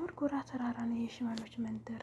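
A woman speaking in short phrases.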